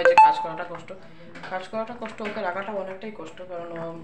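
A woman talking, with a sharp click and a brief ringing tone about a quarter second in.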